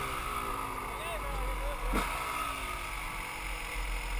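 Dirt bike engine running, its pitch sliding slowly down twice as the revs drop, with a brief knock about halfway. Low wind rumble on the helmet microphone.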